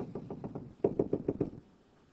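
A pen tapping dots onto a touchscreen: a run of quick taps, with about six in a fast burst a second into the run, then they stop.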